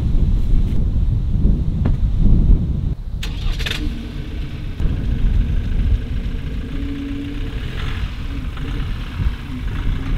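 Ford Ranger's 2.0 EcoBlue four-cylinder diesel engine starting about three seconds in, then settling into a steady idle. A low rumble runs before it starts.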